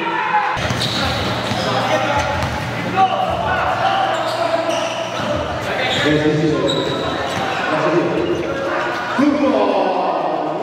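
Live basketball play in a gym: a ball bouncing on the hardwood-style court amid players' voices calling out, with the echo of a large hall.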